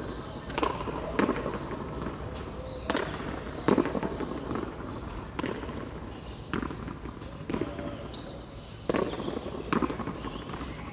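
Hand-pelota rally: sharp smacks of bare hands striking the ball and of the ball hitting the front wall and floor, about nine in ten seconds at an uneven pace, echoing in the covered court.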